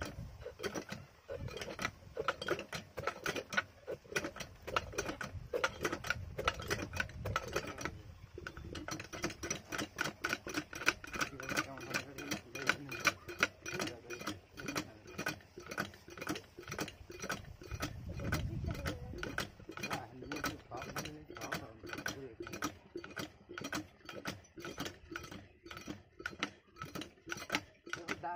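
Small diesel water-pump engine being turned over with its hand crank: a rapid, even clatter of clicks, about four or five a second.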